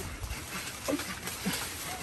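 A few short calls from ducks or geese, once about a second in and twice more around a second and a half in.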